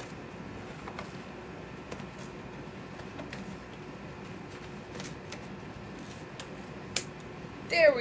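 Old household scissors cutting open a large, heavily taped mailing envelope: faint scattered snips and crinkling, with one sharper snip about seven seconds in.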